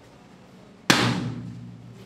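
A party balloon popping: one sharp bang about a second in, dying away over about half a second.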